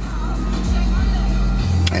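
Low rumble of a garbage truck's diesel engine as it drives slowly past close alongside, heard from inside a car cabin. Music from the car radio plays underneath.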